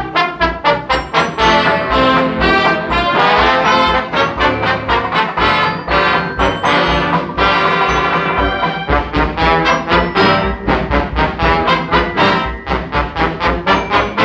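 Dance orchestra playing an instrumental fox-trot passage with the brass to the fore over a steady beat, reproduced from a 1949 Decca 78 rpm shellac record.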